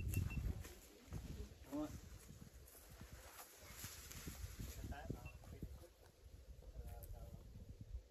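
Quiet outdoor ambience: a faint, uneven low rumble with a few soft, brief voices, one a murmured "um".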